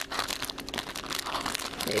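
Clear plastic packaging bag crinkling irregularly as hands work a plush toy out of it.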